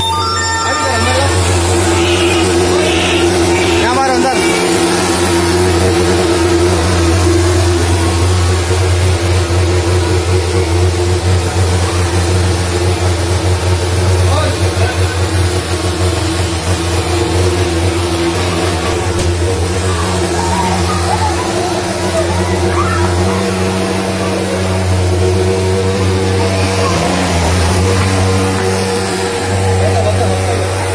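Hand-held pulse-jet thermal fogging machine running with a loud, steady low drone while it sprays insecticide fog; the drone eases slightly about two-thirds of the way through.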